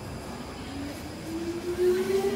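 Stockholm metro C6 train moving along the platform, its traction motors giving a whine that rises steadily in pitch as the train gathers speed, over the rumble of the running gear. The sound grows louder near the end.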